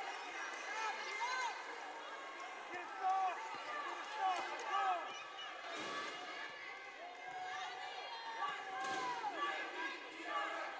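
Basketball sneakers squeaking on a hardwood court as players run and cut, with occasional ball bounces and thuds, over the murmur of an arena crowd.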